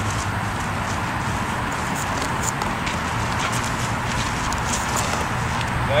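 A horse's hooves stepping a few times on sandy dirt, soft scattered footfalls over a steady low background rumble.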